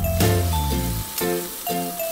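Marinated rainbow trout pieces sizzling in hot oil in a nonstick frying pan as they are laid in with tongs, under background music.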